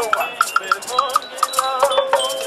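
Music carried by percussion: short, bright bell-like notes over a rattle or shaker.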